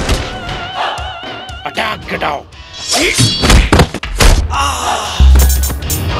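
Film soundtrack of a fight scene: several hard, punch-like thuds over background music, then a heavy low boom near the end.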